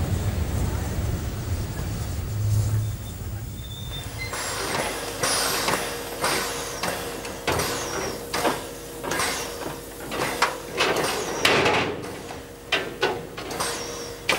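A narrow-gauge passenger train's coaches roll past with a low rumble. After about four seconds comes a Harz metre-gauge 2-10-2 tank steam locomotive standing with steam up: a steady hum, with repeated short, sharp hisses of escaping steam.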